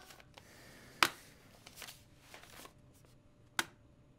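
Paper envelopes being handled and sorted on a desk: soft rustling strokes, with two sharp paper slaps, one about a second in and one near the end.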